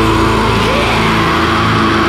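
Heavy metal instrumental passage: a held, heavily distorted chord on electric guitar and bass, with no drum hits.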